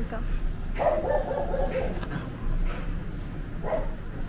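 Indian Spitz puppies crying out: a held whine-like cry of about a second, starting about a second in, then a couple of short yips.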